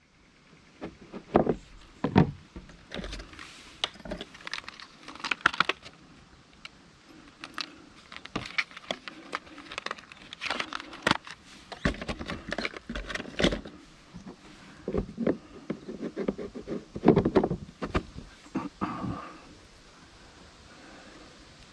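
Plastic lure packet being handled and a soft-plastic lure being rigged on a hook: irregular crinkling, clicks and small rattles, with a few dull knocks.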